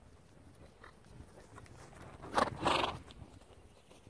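Ridden horse passing close by at a canter, blowing out hard twice in quick succession about halfway through, with faint hoofbeats on grass before it.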